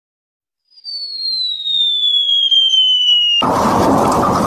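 A cartoon falling-bomb whistle sound effect, one tone sliding steadily down in pitch for almost three seconds, then a sudden loud explosion-like boom effect as the clay piggy bank hits the floor and smashes.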